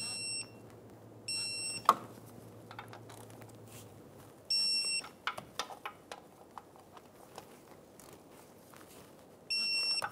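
Digital torque wrench beeping: four short, high-pitched beeps of about half a second each, the signal that the bolt has reached its set torque of 24 foot-pounds. Sharp metallic clicks come in between, one about two seconds in and a run of lighter ones at around five to six seconds.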